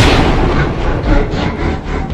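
A loud, sudden bang at the very start that dies away over about a second. Several fainter sharp hits follow as the music thins out, before the music comes back in full just after.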